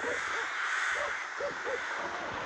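Rooks cawing: about five short calls scattered through the moment over a steady hiss.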